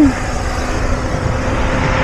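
Wind rushing over the camera microphone while riding an electric mini bike, with a steady low hum from the bike's electric motor underneath.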